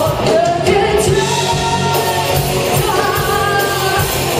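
Live rock band playing a Thai pop-rock song: a lead vocal sung over electric guitars, bass guitar and drums.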